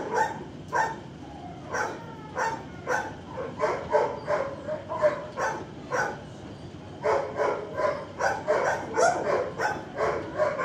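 Several dogs barking over and over in a shelter kennel block, short barks coming about two a second, with a brief lull around six seconds in.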